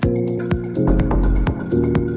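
House and garage dance music from a DJ mix: drum hits over repeating synth chords that change about every second, with heavy deep bass.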